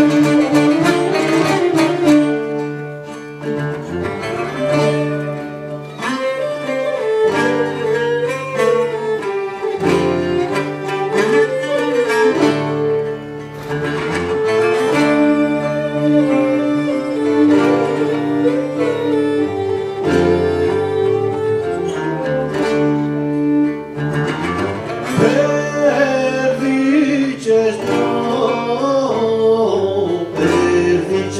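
Traditional Cretan music: a Cretan lyra bows the melody while two Cretan laouta pluck and strum the accompaniment.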